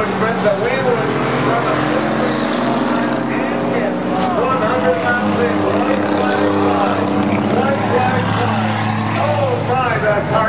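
Several stock car engines running together on an oval track, a steady drone with pitches that rise and fall as the cars circle.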